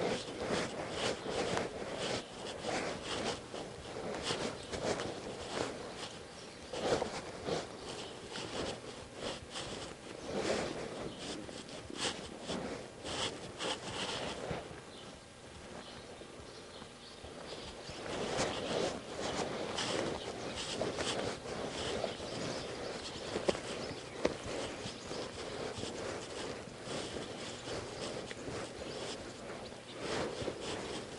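Horse walking under a rider on soft arena sand: muffled, uneven hoofbeats, with a quieter stretch about halfway through.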